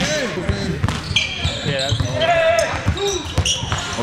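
A basketball bouncing on a hardwood gym floor in short, irregular knocks, amid players' voices.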